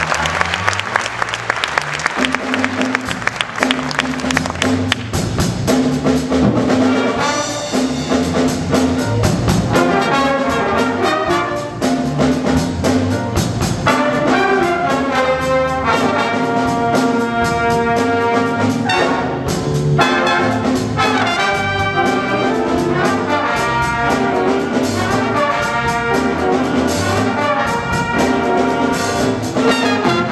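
Student jazz big band playing a funk tune: trumpets, trombones and saxophones playing together over electric bass, piano and drums.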